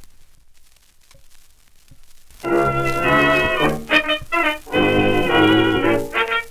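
Faint shellac 78 rpm record surface crackle with a couple of clicks as the stylus runs into the groove. About two and a half seconds in, a 1920s dance band starts playing loud, held chords.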